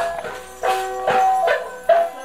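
Live Lisu folk dance music: held, reedy notes playing a repeating tune over a sustained drone, with a regular beat about every half second.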